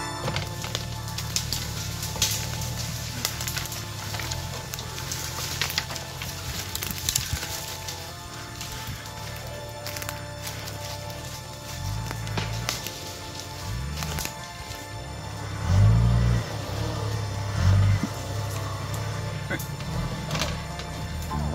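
Off-road 4x4 engine pulling along a muddy woodland track, revving up in several surges in the second half, with scattered sharp cracks of twigs and branches.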